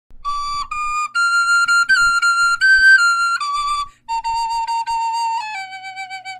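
Wooden recorder playing a melody in clean, held notes. A short break for breath comes about four seconds in, and then a second phrase steps lower.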